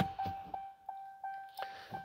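The Dodge Charger's interior warning chime: a steady, bell-like tone that repeats about three times a second.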